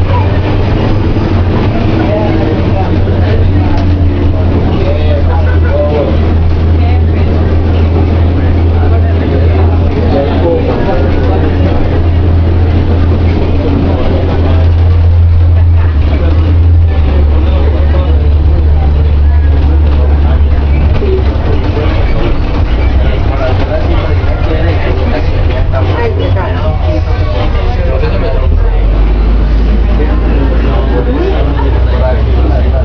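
Inside a Metroplus bus under way: a steady low engine drone that drops lower in steps as the bus changes speed, most clearly near the end as it comes up to a station. Indistinct chatter from passengers runs under it.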